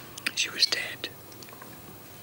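A woman's breathy mouth sounds: a short hissing breath with small lip and mouth clicks in the first second, then quiet room tone.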